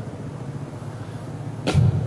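Steady low background hum on a live microphone feed during a pause in speech, with a short burst of noise near the end.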